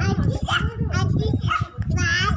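Young children's voices: short, high-pitched squeals and babbling calls, over a steady low rumble.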